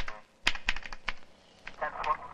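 Computer keyboard being typed on: a run of sharp, uneven key clicks, several a second. A short burst of a man's voice comes near the end.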